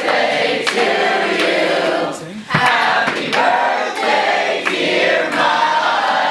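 A group of voices singing together, with hand claps keeping a beat about every two-thirds of a second; a short break about halfway through.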